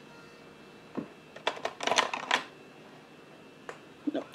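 Light clicks and rattles of small objects being handled: one click about a second in, a quick flurry of clicks around two seconds, and a last click near the end.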